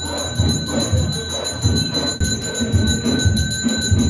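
Temple bells ringing continuously during an aarti: a steady high ringing with fast clanging strokes, over a run of low rhythmic thumps.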